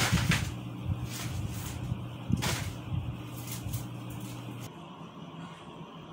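Steady low hum with a few knocks and rustles; the hum cuts off suddenly about three-quarters of the way through.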